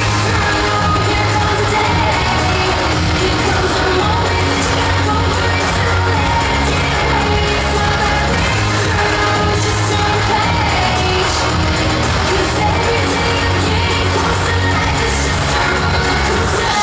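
A live band playing upbeat pop music with vocals, loud and steady, with a strong bass line.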